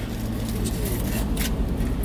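Faint crinkling of a foil burger wrapper being handled, over a steady low hum inside a car cabin.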